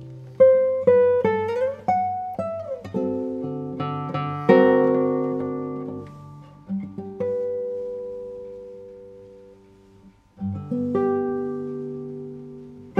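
Classical guitar played solo in a slow, free passage: single plucked notes with slides up and then down the string in the first few seconds, then full chords left to ring. One chord dies away almost to silence about ten seconds in before the next chords are plucked.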